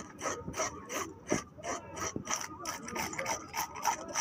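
A flat wooden block scraped repeatedly along the body of a large fish, rasping the scales off in quick strokes, about four a second.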